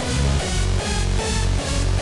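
Hardstyle melody played back from FL Studio on reFX Nexus synth leads, over a hardstyle kick and bass: a kick drum lands about two and a half times a second under the synth notes.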